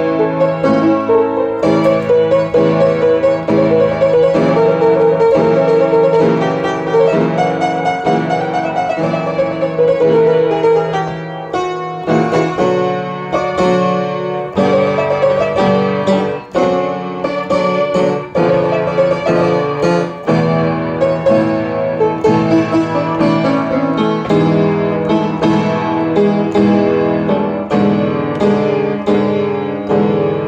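Piano music: a continuous flow of notes over held lower chords.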